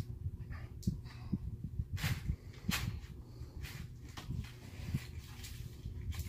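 Cardboard boxes being handled: scattered short taps and rustles over a low steady hum.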